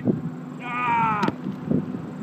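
A man's drawn-out yell, a little under a second long and falling slightly in pitch, cut off by a sharp click; then footsteps on dirt.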